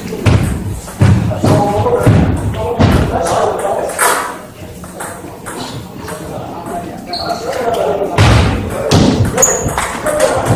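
Table tennis rally: the celluloid-style ball clicking off rubber bats and the table, mixed with thuds of players' footwork on the floor, in a large echoing hall. The strikes come thickest in the first few seconds and again near the end.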